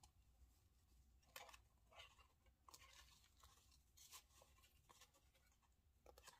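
Near silence, with a few faint, brief rustles of paper being handled as small cards are slid into the pockets of a paper bookmark.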